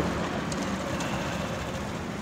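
Steady street traffic noise: a low, even hum of passing motor vehicles.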